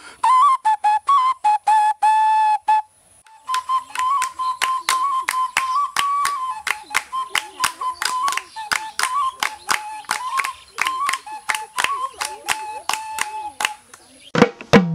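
Xutuli, the Assamese clay whistle, blown in rapid short toots that flick between two close pitches, like a bird call. It breaks off about three seconds in, then resumes in a longer, quicker run of toots punctuated by sharp clicks.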